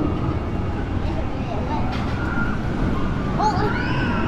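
Outdoor theme-park ambience: a steady low rumble with faint voices of people in the distance.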